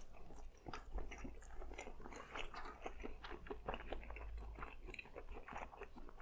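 A person chewing a mouthful of glazed grilled eel nigiri close to the microphone: faint mouth sounds made of many small soft clicks throughout.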